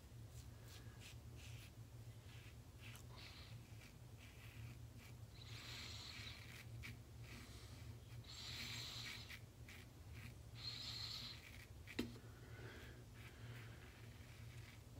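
Single-edge safety razor with a Feather Pro Super blade scraping faintly through lathered stubble in short strokes on an against-the-grain pass, with three longer strokes in the second half. A sharp click comes near the end.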